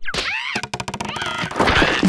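Cartoon sound effects: a thunk at the start, then a squealing cry that rises and falls, heard twice, and a louder rushing noise near the end.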